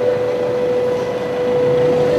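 Steady street background noise with a constant mid-pitched hum running through it.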